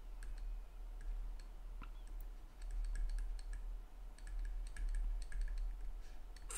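A digital pen tapping and clicking on a tablet screen while writing by hand: a string of light, irregular clicks over a steady low hum.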